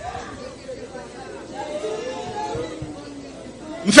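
Faint, low-level voices talking in the background, then loud speech starting abruptly at the very end.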